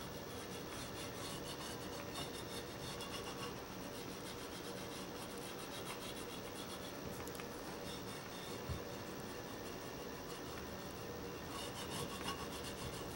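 Water-soluble oil pastel rubbing across paper in quick back-and-forth strokes as a shape is coloured in, a soft scratchy rasp, with one small knock partway through.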